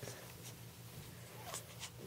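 Quiet room with faint rustling of a baby's clothing as a hand moves over it, and a few soft ticks about one and a half seconds in.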